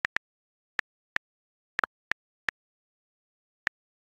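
Short, identical digital tap clicks from a tablet's touch interface, nine of them at irregular spacing with dead silence between, two falling almost together just under two seconds in.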